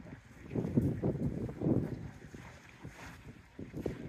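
Wind buffeting the microphone outdoors: a low, uneven rumble that swells and fades in gusts.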